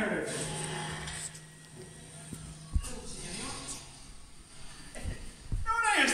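A voice on stage makes a falling cry drawn out into a long, low held sound lasting about two seconds. A few dull thuds follow, likely footsteps on the wooden stage boards. Voices pick up again near the end.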